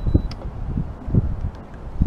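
Wind buffeting the camera microphone in uneven low gusts.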